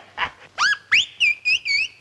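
Bird-like whistled chirps standing in for a canary's song: a quick rising whistle, then a string of short warbling notes.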